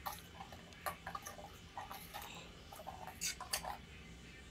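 Metal spoon stirring an oil-and-spice marinade in a small stainless steel bowl, making light, irregular clinks and scrapes against the bowl, the loudest a few in quick succession near the end.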